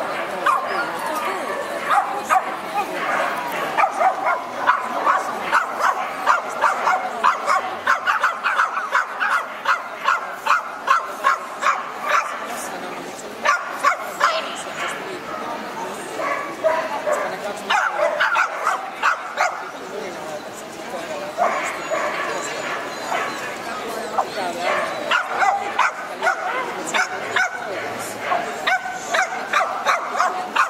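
A dog yapping over and over, about two or three barks a second, in long runs that stop and start again, over the steady chatter of a crowded hall.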